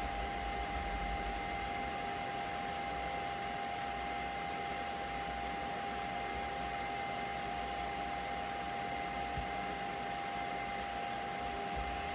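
Anycubic Kobra 2 Max 3D printer's cooling fans running steadily with a steady whine, the print head standing still during a pause in the auto-level routine.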